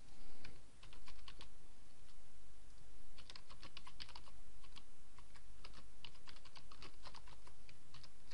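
Typing on a computer keyboard: a short run of keystrokes in the first second, then a pause, then a longer quick run of keystrokes from about three seconds in until near the end.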